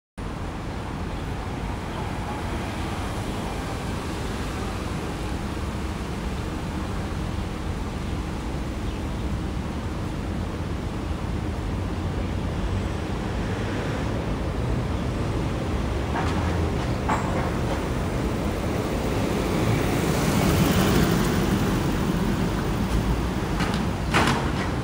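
Street ambience: steady traffic noise, swelling as a vehicle passes about twenty seconds in, with a couple of faint clicks shortly before.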